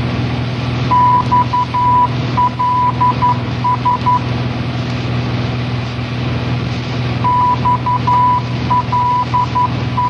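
A single high electronic beep tone keyed on and off in short and long beeps, Morse-code style, in two runs: one from about a second in and one starting past the seventh second. Under it is a steady low hum with hiss.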